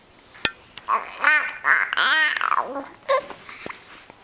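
A nearly three-month-old baby cooing: a few drawn-out, high vocal sounds that rise and fall in pitch, with a short click just before them.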